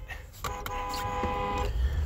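A car horn sounding once, a steady held note lasting just over a second, heard from inside a moving car over low road rumble. It is a warning at a near-miss with a car speeding down a residential street.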